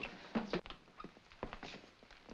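Men's shoes stepping on a hard floor: a handful of short, irregular footsteps as people walk across a room.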